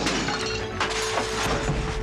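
Glass shattering and things crashing as a reindeer blunders through a house, with a string of sharp knocks and clatters, over music holding one steady note.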